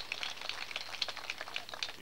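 Faint outdoor background noise with many small scattered clicks and crackles, in a pause between a man's sentences.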